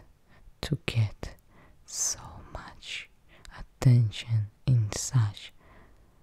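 A woman speaking softly in a low, partly whispered voice, in short phrases broken by pauses.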